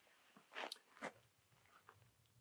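Near silence, with two faint, brief soft sounds about half a second apart near the middle.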